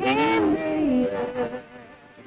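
A woman singing one long, wordless held note. It bends up and then down at the start, settles on a lower pitch and fades away about a second and a half in.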